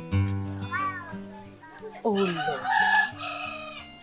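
A rooster crows once, about two seconds in, over soft background music that fades away.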